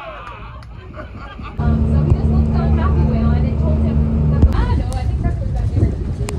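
Steady low drone of a boat's engines heard from inside its passenger cabin while underway. It starts suddenly about a second and a half in and stops about four and a half seconds in, with voices faintly behind.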